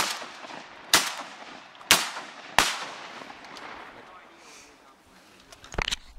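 A volley of shotgun shots fired at passing wood ducks: one at the start, then three more roughly a second apart, each trailing off in a long echo. There are a few brief clicks near the end.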